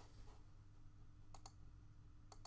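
Near silence with a faint steady hum, broken about one and a half seconds in by two quick computer mouse clicks close together.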